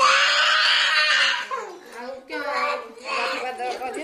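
A toddler screaming loudly for about a second and a half, then two shorter crying calls.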